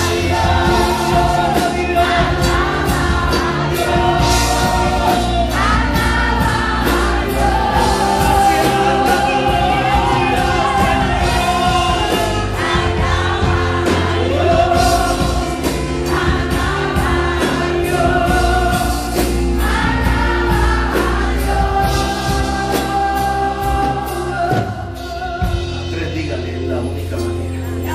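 Live gospel worship music: a group of singers and a lead voice over a band with bass and a steady drum beat.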